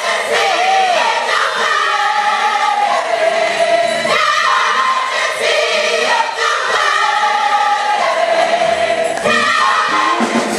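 Gospel choir singing in harmony, phrases of long held chords, with a quick wavering vocal run near the start.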